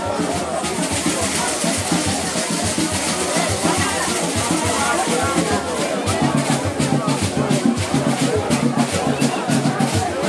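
Music with a steady drum beat, with people's voices talking over it.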